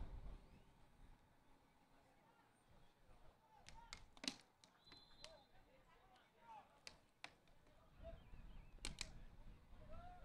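Near silence: faint outdoor field ambience with a few soft knocks, the clearest about four seconds in and two more near the end, and faint distant voices.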